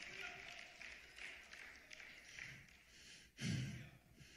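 Low room tone, then near the end a single short breath, a sigh-like exhale, into a handheld microphone held close to the mouth.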